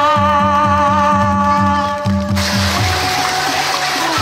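A woman's sung final held note with vibrato over a backing track with a steady bass beat. The song ends a little past two seconds in, and clapping follows.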